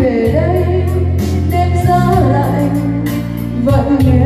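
A woman singing a Vietnamese song into a microphone over instrumental accompaniment, with held bass notes and a steady tick of hi-hat.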